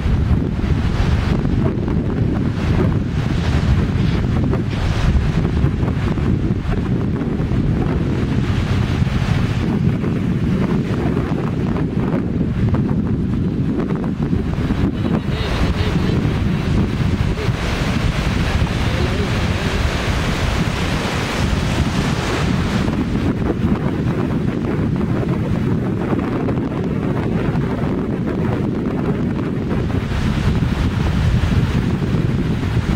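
Wind buffeting the microphone in a steady low rumble, over the wash of small waves breaking and running up a sandy beach. The surf hiss grows louder for several seconds in the middle.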